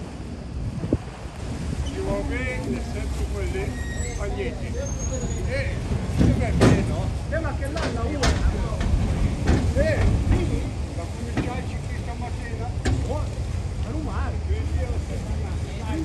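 Steady low rumble of a boat under way, with wind on the microphone, and people talking in the background.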